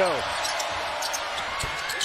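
Steady crowd noise in a basketball arena, with a basketball being dribbled on the hardwood court and short sharp knocks from the play.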